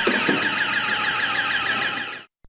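Electronic burglar alarm siren sounding in a fast, repeating sweeping warble, set off by a break-in.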